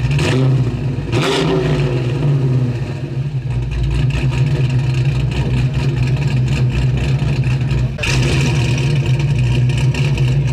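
Car engine running with a steady low rumble, changing abruptly about a second in and again near the end as clips cut from one to the next.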